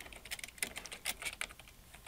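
Computer keyboard being typed on: an irregular run of quick key clicks.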